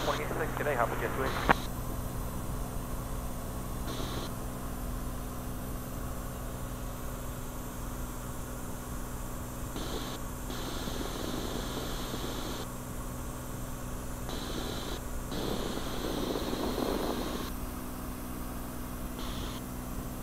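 Cirrus SR20's single piston engine and propeller drone steadily in cruise flight, heard from inside the cockpit as an even low hum.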